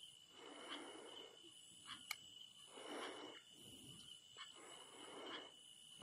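Near silence: faint room tone with a thin steady high hum, a few soft puffs of noise about every two seconds and one or two faint ticks.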